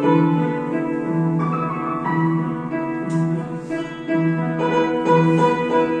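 Upright piano played solo: a melody over a low accompaniment note that comes back again and again.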